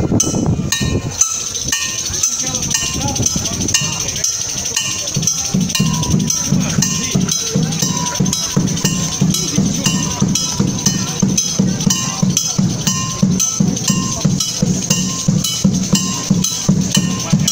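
Hand percussion played in a steady, fast rhythm: a metal bell struck over and over, with a low drum beat growing stronger about five seconds in.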